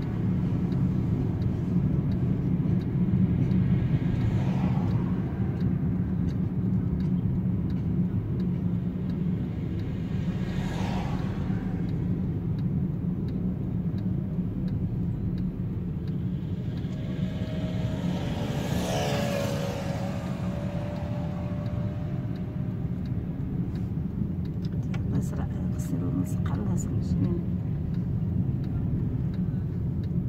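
Steady low engine and road rumble heard inside a small car's cabin as it is driven. Other vehicles swish past now and then, and a pitched sound rises and falls around the middle.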